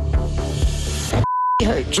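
A short, steady high beep about a second and a quarter in, a censor bleep that blanks out all other sound for about a third of a second; background music plays before it.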